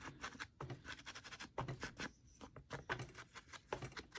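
Soft, quick, irregular dabs and taps of a foam ink blending tool pressed onto a Distress Ink pad and against the edges of a card, with a brief lull midway.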